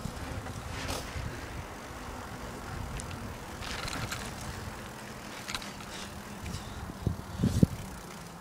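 Wind rumbling on a handheld phone microphone with handling noise as the phone is carried, and a few heavier thumps near the end.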